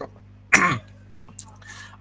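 A man clearing his throat once, a short loud burst about half a second in that falls in pitch.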